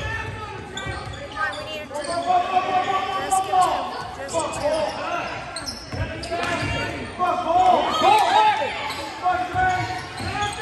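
Basketball bouncing on a hardwood gym floor during a game, with spectators and coaches shouting and cheering in an echoing gym; the shouting is loudest from about two to five seconds in and again near the eight-second mark.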